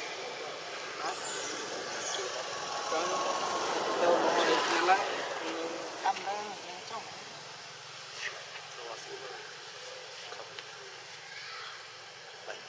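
People's voices talking in the background, loudest about four seconds in, over a steady outdoor background hum.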